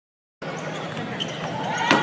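Large-arena ambience with voices in the background, and one sharp, loud impact near the end.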